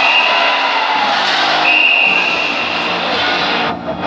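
Ice hockey arena crowd noise with music over the public-address system during a goal celebration. A steady high-pitched tone sounds twice, the second time for about a second and a half, and the sound breaks off abruptly near the end.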